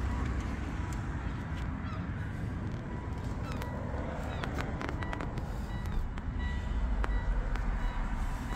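Steady low rumble of outdoor background noise with scattered light clicks and a few faint, brief high tones.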